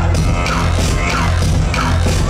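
Loud live hip-hop music with a heavy, pulsing bass line, heard from within the concert audience.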